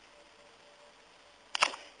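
Near silence, then a brief cluster of sharp clicks about one and a half seconds in.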